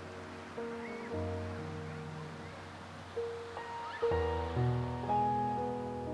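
Slow instrumental background music: notes and chords enter one after another and ring on, growing fuller from about four seconds in.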